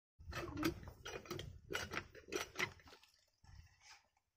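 A small single-cylinder diesel water-pump engine being cranked by hand: four strong rhythmic clanking strokes about one and a half a second, then weaker ones near the end. The engine has not yet caught and run.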